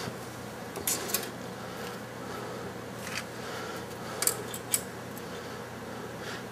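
A few small, sharp clicks and clinks from a soldering iron and tools being handled against a circuit board and its metal chassis, over a steady low background hum.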